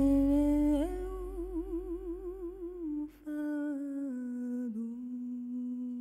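A woman's singing voice holding a wordless melody with wide vibrato, in two phrases with a breath about three seconds in; the second phrase slides down and settles on a long held note. A low sustained accompaniment note fades out underneath in the first half.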